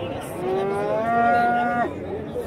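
A young bull calf mooing once: a call of about a second and a half that rises in pitch, holds, then stops sharply.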